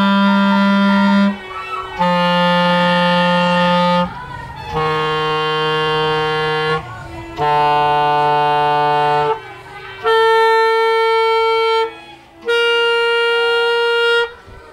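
Clarinet played in long held notes of about two seconds each, with short breaks for breath between them: four low notes stepping slightly downward, then two much higher notes.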